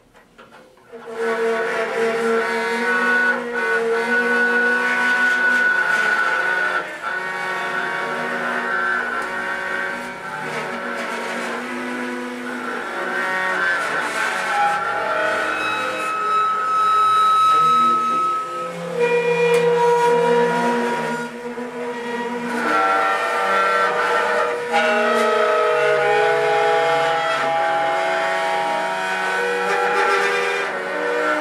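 Small string ensemble of violins and cello playing held, overlapping bowed notes that change every few seconds, starting about a second in after a brief silence.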